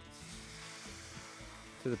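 Hot milk poured into a hot cast iron skillet of flour-and-sausage-drippings roux, sizzling steadily as it hits the pan, starting right at the pour. Background music plays underneath.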